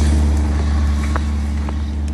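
Bus engine running close by: a loud, steady low rumble with hiss over it.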